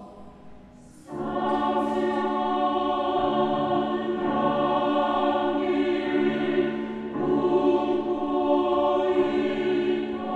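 Mixed choir of men's and women's voices singing in Korean in sustained chords. It comes in together about a second in, after a brief pause, with the sung line "사랑스런 향기를 뿜고 있다" ("pouring out a lovely scent").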